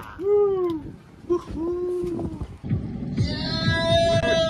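Men's wordless hooting and whooping: two short 'hoo' calls, the first bending up and down, in the first half, then a long, loud cry near the end over a low rumble.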